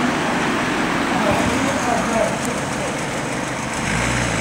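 Steady road traffic noise with a car driving by. Faint distant voices are heard about a second in.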